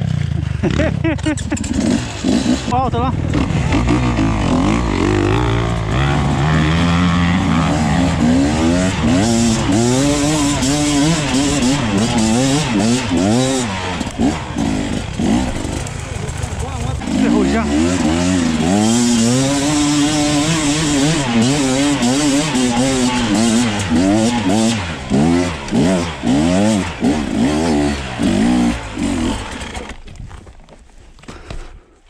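Dirt bike engines revving up and down again and again, the pitch rising and falling with each twist of the throttle, easing briefly about halfway through before the revving picks up again.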